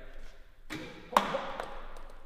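A single sharp tap about a second in, after a short rustle, as whiteboard markers are handled at the shelf beside the board.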